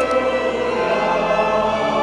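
Church singing: cantors and a choir of voices holding sustained notes in the sung Gospel acclamation of a Catholic Mass.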